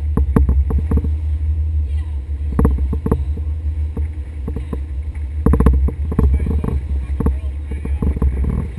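Small boat under way: a steady low rumble with irregular knocks and slaps, the hull meeting the waves.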